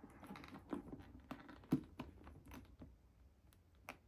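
Light, irregular clicks and taps of a handbag's gold-tone metal turn-lock clasp being fastened over its leather front strap, with handling of the stiff bag. A sharper click comes just under two seconds in, and another near the end.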